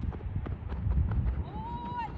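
Outdoor wind rumbling on the microphone, with light irregular thuds of footsteps running on a dirt infield. A short pitched call rises and then holds near the end.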